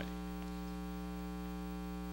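Steady electrical mains hum from a sound system: a low, buzzy drone made of many evenly spaced overtones.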